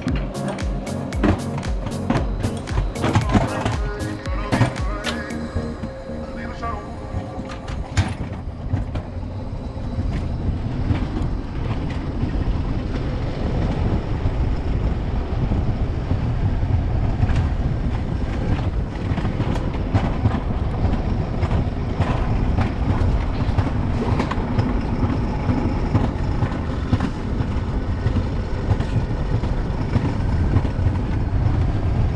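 Wiegand alpine coaster sled running fast downhill on its steel tube rails: a steady low rumble from the wheels, with rattles and wind noise. Music plays over the first few seconds and ends about six seconds in.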